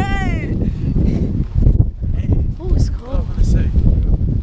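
Excited voices of a group of women: a high falling exclamation or laugh right at the start, then scattered indistinct chatter over a steady low rumble.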